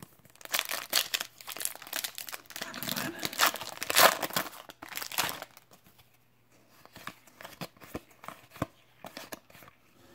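Foil wrapper of a Topps trading-card pack being torn open and crinkled: a dense crackle lasting about five seconds, loudest near the middle, then a few faint scattered clicks as the cards are handled.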